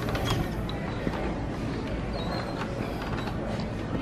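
Double stroller being pushed across a hard store floor, its wheels and frame creaking and clicking, with a couple of sharp clicks near the start.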